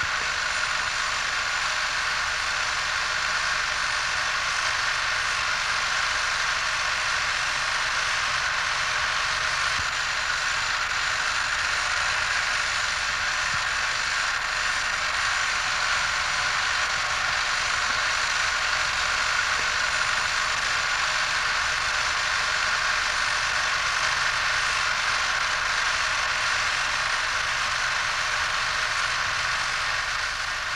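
A steady, even hiss, unchanging throughout, with no speech or music.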